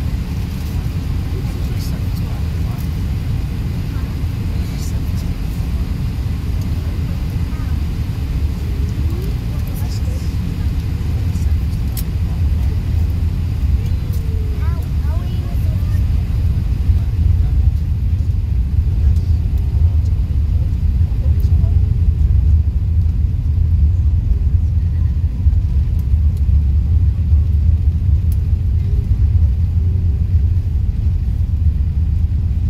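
Cabin noise inside a four-engined Airbus A380 during its take-off roll: a steady low rumble from the engines and the wheels on the runway, growing louder as the aircraft gathers speed.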